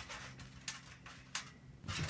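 A small child bouncing on a trampoline: two faint, short clicks from the trampoline about two-thirds of a second apart, over a faint steady low hum.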